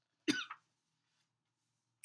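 A single short cough from the reader, about a quarter second in.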